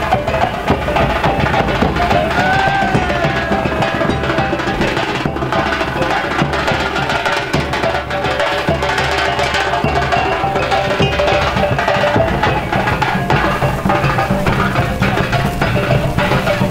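A group of Minangkabau tambua drums beaten with sticks in a dense, driving rhythm, with a sustained melodic line over the drumming.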